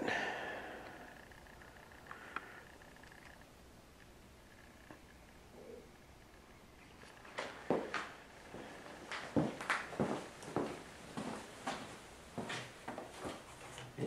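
A quiet room for the first half, then a run of light knocks and rubbing handling noises about halfway through that go on irregularly to the end.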